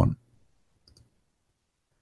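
Near silence after a man's voice breaks off, with one faint computer mouse click about a second in.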